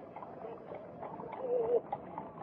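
Faint bird call, a low wavering coo, about one and a half seconds in, over quiet background hiss.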